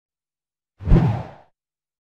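A single whoosh sound effect for a logo intro, starting sharply just before a second in and fading away within about half a second.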